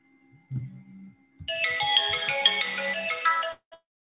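A mobile phone ringtone: a bright melodic tune of quick high notes, starting about a second and a half in and cutting off sharply shortly before the end.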